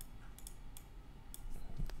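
Computer mouse buttons clicking: three quick pairs of short, faint clicks as shapes are selected and moved.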